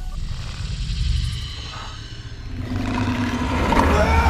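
A deep, low rumble that eases off about halfway through, then builds again, with a low hum coming in near the end.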